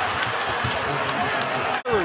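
Basketball arena crowd noise, a dense steady wash of many voices following a made shot, cut off abruptly near the end by an edit.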